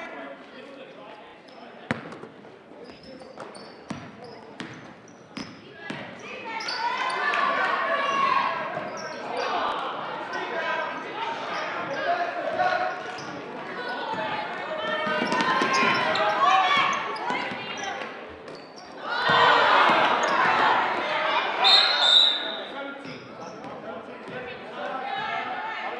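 A basketball being dribbled on a hardwood gym floor, sharp separate bounces in the first few seconds. Then players and spectators are shouting and calling out with no clear words, loudest about three-quarters of the way through. A short, high referee's whistle blast sounds near the end.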